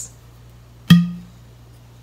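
Plastic flip-top cap of a ponzu sauce bottle snapping open: one sharp click about a second in, with a brief ring after it.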